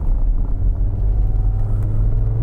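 Mercedes-Benz 250TD diesel engine running while driving, heard from inside the cabin as a steady low drone.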